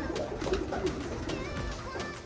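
Racing pigeons cooing, a low wavering sound.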